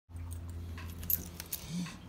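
A bunch of keys on a ring, with a Honda car key, jangling in the hand: a few sharp metallic clinks about a second in, over a low steady hum.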